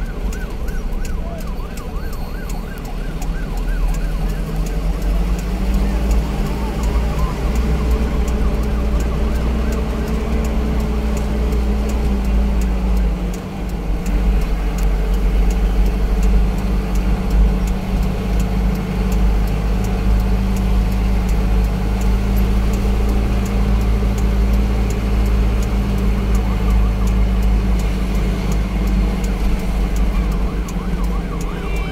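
Vehicle engine and road rumble heard from inside the cab while driving slowly; the engine note rises a little, dips briefly about halfway through, then holds steady.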